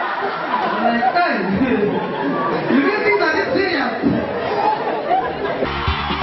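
Voices talking over one another, a man's voice among them, in a large hall. Near the end, music with a steady bass starts.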